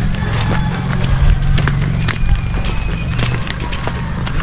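Footsteps on a dirt path: scattered crunches and knocks of people walking, over a steady low hum.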